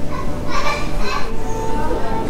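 Children's voices, shouting and chattering in a busy public hall, with a short burst of high calls near the middle.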